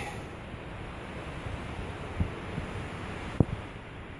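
Steady rushing noise on a handheld camera's microphone, with a light knock about two seconds in and a sharper one about three and a half seconds in.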